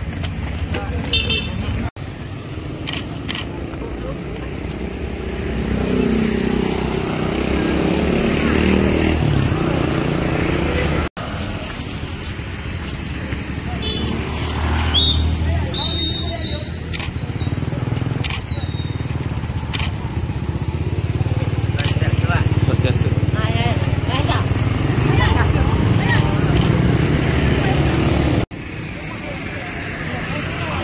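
Roadside traffic: motorcycle and car engines passing, swelling and fading twice, with people's voices mixed in. The sound breaks off abruptly three times where the clip is cut.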